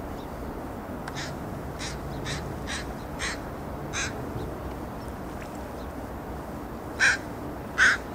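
A crow cawing: a run of six short, harsh caws, then a pause and two much louder caws near the end, over steady low background noise.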